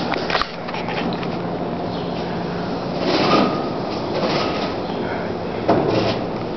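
Otis hydraulic elevator's doors sliding shut, over a steady low hum that stops about three seconds in.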